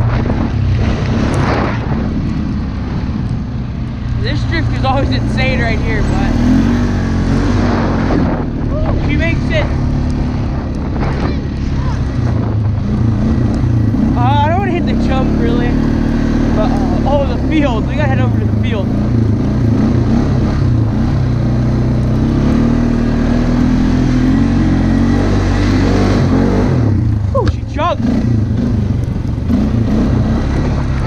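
Four-wheeler (ATV) engine running hard under the rider, its pitch rising and falling over and over as the throttle is opened and eased off through the turns.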